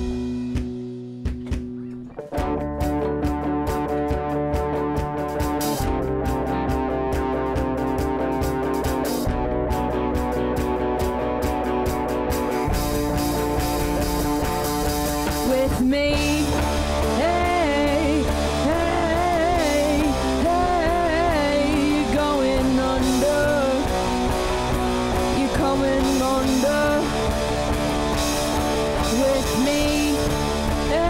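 Rock band playing live with electric guitars, bass and an electronic drum kit in an instrumental break. The music nearly drops out for about two seconds at the start, then the full band comes back in, and from about halfway a lead line plays sliding, bending notes over it.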